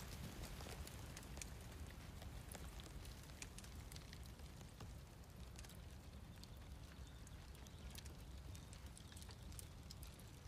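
Faint, steady low rumble with scattered small ticks and crackles, like debris and rubble settling.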